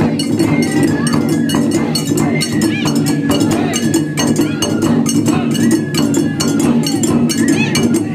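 Taiko drum ensemble playing a fast, driving rhythm of dense drum strokes, with a metallic clanging beat and the piercing, bending notes of a Japanese bamboo flute over it.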